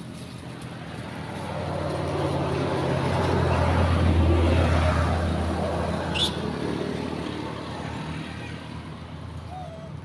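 A motor vehicle passing by on the road, its engine and tyre noise swelling to a peak about four seconds in and then fading away.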